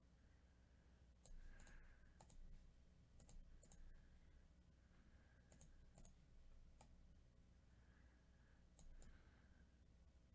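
Faint computer mouse clicks, mostly in pairs, spaced a second or so apart.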